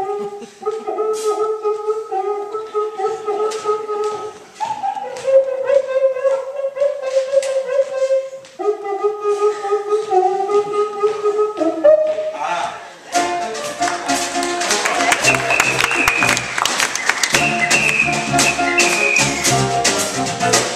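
A home-made cuíca-style friction drum made from a biscuit tin, a stick inside its skin rubbed with a wet sponge, giving held hooting tones whose pitch steps up and down as the skin is pressed. About 13 seconds in, the full band comes in with a samba over it.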